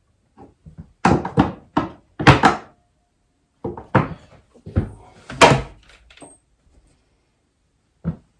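Irregular knocks and thumps of a small electrical box and hand tools bumping against pine wall paneling while the box is held in place for mounting. About nine knocks come in two bunches a little over a second apart, the loudest one in each bunch near its end.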